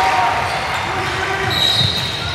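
Basketball bouncing on a hardwood gym court amid general game noise, with a short high squeal about three-quarters of the way in.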